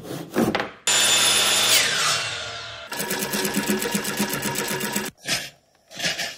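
A run of workshop sounds. First a few short strokes of a hand tool scraping along a wooden board. Then a power tool runs loudly and winds down, falling in pitch. About three seconds in, a sewing machine starts stitching in a fast, even rhythm for about two seconds.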